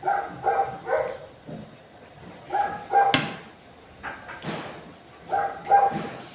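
A dog barking in three short bouts of two or three barks each, a couple of seconds apart. There is a sharp click about halfway through.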